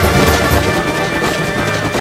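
Mexican banda music: a brass band playing an upbeat song.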